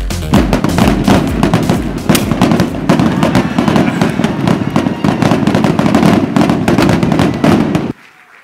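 A standing crowd clapping and cheering, a dense crackle of claps with a few sharper pops, over music; it stops abruptly at the end.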